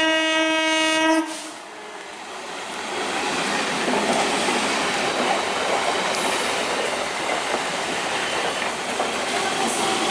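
An EMU electric local train's horn sounding one long steady note that cuts off about a second in. Then the train passes close by, its wheel and rail noise building to a loud, steady rush.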